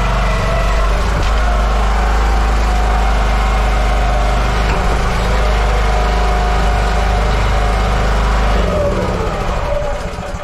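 Small gasoline engine of a ride-on lawn roller running steadily under load as the roller is driven. Near the end the engine note drops and the sound falls away.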